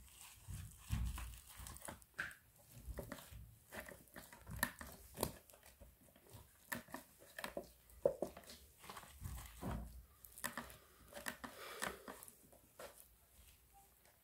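Plastic sheeting crinkling and a thin clear plastic mold tray clicking and flexing as gloved hands press damp crystal-kit powder paste into it, in scattered small crackles and taps, with two soft low thumps about a second in and near the ten-second mark.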